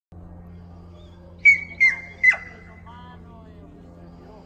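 Three short, sharp whistle blasts in quick succession, the last sliding steeply down in pitch: a handler's herding whistle commands to a sheepdog working sheep.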